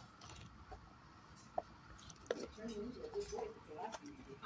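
A person's voice, quiet and indistinct, in the second half, with a single faint click about one and a half seconds in.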